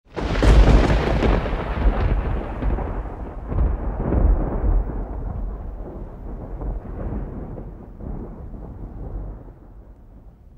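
Intro sound effect: a deep, thunder-like rumble that starts suddenly and loudly, swells a couple more times in the first few seconds, then slowly dies away.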